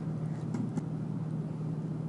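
Steady low hum with a layer of background noise, and two faint clicks about half a second in.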